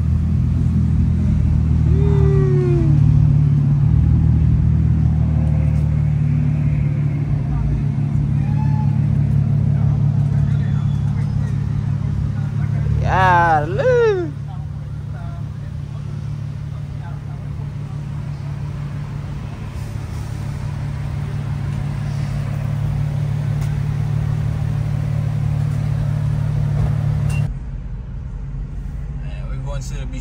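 Infiniti sedan's engine idling close by, a steady low drone that stops abruptly near the end.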